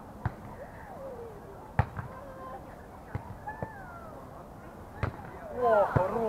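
A volleyball being struck by hands and forearms during a beach volleyball rally: five sharp slaps about a second apart, the second one the loudest. Distant voices run underneath, with a burst of several people calling out near the end.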